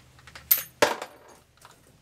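Bolt of a Mosin Nagant bolt-action rifle being worked by hand: two sharp metallic clacks about a third of a second apart, the first with a brief ringing.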